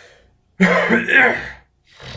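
A man laughs briefly: one loud, breathy burst about half a second in, lasting about a second, then a fainter breath near the end.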